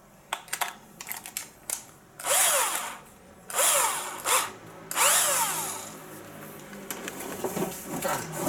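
Cordless drill run in three short bursts, each a motor whine that spins up and winds down, while its chuck is tightened onto a hole-saw bit. A few light clicks from handling the chuck come first.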